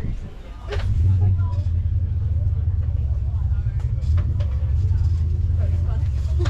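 A car engine running at a steady idle: a low rumble that comes in just under a second in and holds steady.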